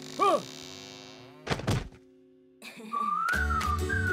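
Cartoon sound effects: a short whistle-like tone that rises and falls, then two heavy thunks about a second and a half in. After a brief silence, bright theme music with a melody and bass starts up.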